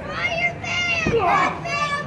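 Children in the crowd shouting and calling out, several high-pitched voices overlapping, with a low thump about halfway through.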